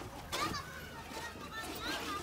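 Faint children's voices talking in the background, in short bursts over quiet outdoor ambience.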